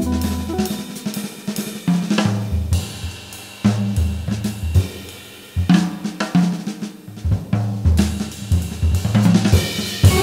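Jazz drum kit playing a busy passage of snare, hi-hat, cymbals and bass drum in a Hammond organ trio recording, with low held organ bass notes underneath.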